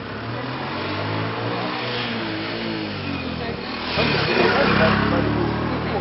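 A motor vehicle's engine running as it drives along the road, growing louder about four seconds in, with voices talking underneath.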